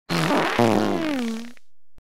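A loud, pitched fart in two parts: a short blast, then a longer one that falls in pitch and cuts off suddenly.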